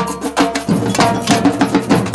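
Samba percussion band playing a fast, dense batucada rhythm: drums struck with sticks and small tamborim hand drums, with a bright metallic ring over the beat.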